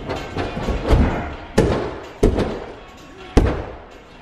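Bare feet and body striking an inflatable airtrack: four sharp thuds spread over a few seconds, the last the loudest.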